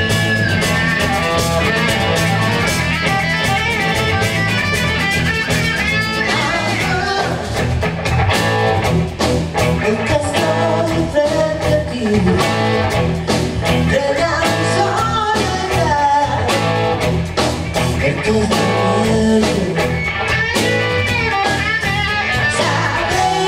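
A live rock band playing: electric guitars, bass guitar and drums, with a woman singing.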